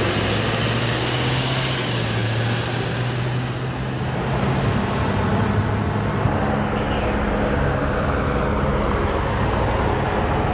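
Heavy vehicle engines running with a steady low drone, first an ambulance as it pulls slowly past, then idling emergency vehicles. The sound changes abruptly about six seconds in.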